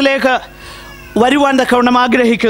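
A man preaching in Malayalam through a microphone in a loud, emphatic voice, breaking off for about half a second in the middle before going on.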